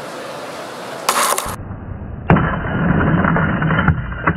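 Heavy steel ball dropped onto a phone's bare Gorilla Glass screen, shattering it: a short crash about a second in, then, more muffled, a second sharp impact just after two seconds followed by crackling of broken glass.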